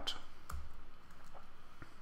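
A few scattered computer keyboard keystrokes, single sharp clicks spaced about half a second or more apart, as a word of code is finished.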